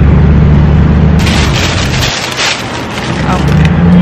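A motor vehicle's engine idling with a steady low hum, which drops away about two seconds in and comes back about a second later.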